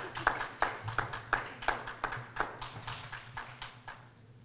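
Sparse applause from a small group: a few people clapping unevenly, thinning out and stopping near the end.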